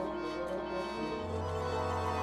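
Orchestral music with held string notes; a low bass note comes in about a second in.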